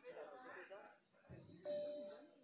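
Faint, indistinct voices, then a single bell-like tone that rings out about one and a half seconds in and holds.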